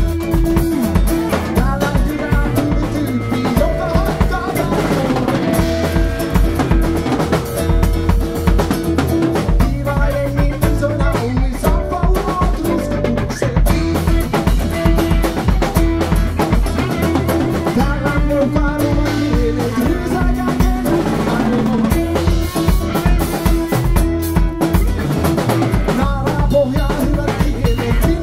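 Instrumental passage of a rock-folk band: a drum kit keeps a steady beat with rimshots under double bass and guitars, with no singing.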